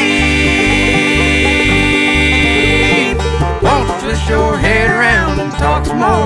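Acoustic string-band song: a long sung note held for about three seconds, then more sung melody, over a steady bass beat and picked acoustic strings.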